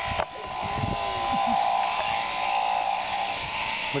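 Electric sheep-shearing machine running with a steady buzzing hum, with a few low handling knocks near the start.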